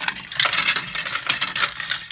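A bunch of keys jangling and clicking in quick metallic taps as a key works the reset lock of a fire alarm pull station.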